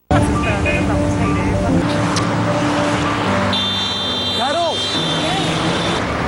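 Road traffic noise from a busy street, a steady wash of passing vehicles. Held musical notes run underneath, and a high steady tone sounds for about two seconds in the second half.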